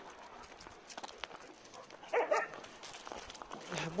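A dog gives one short bark about two seconds in while dogs play-wrestle, with light scuffing clicks of paws and steps on gravel.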